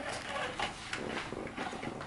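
Plastic conveyor belt of a Hot Wheels Ultimate Gator Car Wash playset lifting a toy car, with a run of light, uneven plastic clicks and clatter.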